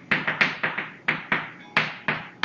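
Chalk writing on a chalkboard: a quick run of sharp chalk taps on the board, about five a second.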